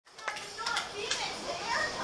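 Background chatter of several people's voices overlapping, with a few light clicks.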